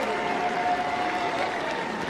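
Ballpark crowd applauding steadily after a home run.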